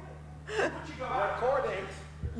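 Speech: a voice starts talking about half a second in, not picked up clearly, over a steady low hum.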